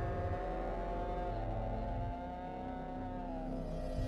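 Horror score drone: several held, dissonant tones that waver slowly in pitch over a low rumble, sagging downward near the end.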